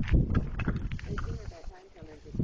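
Indistinct talking over low thumps and rumble, loudest in the first second.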